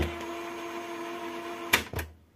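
Piano-key buttons of a National radio-cassette recorder clicking as they are pressed: one click at the start and two quick clicks near the end. A faint steady tone runs between them.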